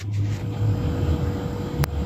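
A steady low rumbling noise with a faint hum, carried over a live-stream participant's open microphone, which starts abruptly and cuts off suddenly.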